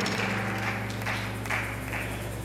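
A live band holding a low sustained chord as an underlay, steady throughout, with faint crowd noise above it.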